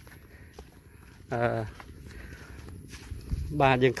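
Footsteps of a person walking on a dirt path through grass, faint and irregular. A short spoken sound comes about a second and a half in, and talking starts again near the end.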